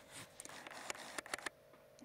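Faint camera handling noise while the camera is refocused on a close-up: a quick run of light clicks and ticks, dying away about a second and a half in.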